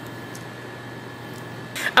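Steady hum and fan-like noise of running kitchen appliances, with a low constant drone and a faint thin tone over it. A couple of faint soft taps are heard.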